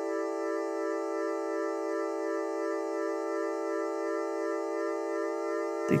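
Sonic Projects OP-X PRO II software synthesizer playing its Matrix Brass Strings patch: one sustained tone held at a steady pitch, with a faint regular wobble in its upper part about three times a second.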